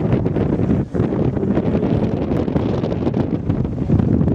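Wind buffeting the microphone: a loud, uneven low rumble that dips briefly just under a second in.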